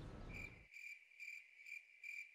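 Faint cricket chirping, evenly spaced at about two chirps a second: the comic 'crickets' cue for an awkward silence after a remark falls flat.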